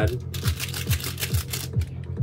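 A plastic seasoning packet crackling quickly as it is handled and torn open, over background music with a steady low beat.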